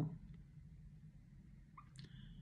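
Quiet room tone with a steady low hum, broken by a faint tick early on and a short, faint squeak-like click near the end.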